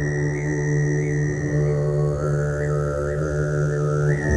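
Music intro: a steady low drone with held tones above it, under a single high melodic line that holds, steps down about halfway through and glides back up near the end, with small upward flicks along the way.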